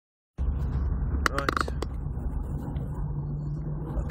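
Steady low rumble of a car driving at motorway speed, heard from inside the cabin, starting suddenly just after the start. A few short clicks and brief pitched sounds come about a second and a half in.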